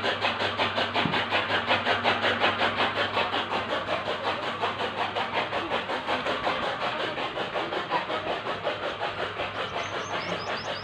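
A motor-driven machine running steadily, with a rapid, even beat of about five or six pulses a second over a low steady hum.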